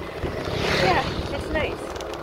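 Wind buffeting the microphone of a camera on a moving bicycle: a low rumble with a rush of noise that swells and fades around the first second. Brief bits of voice or laughter sound over it.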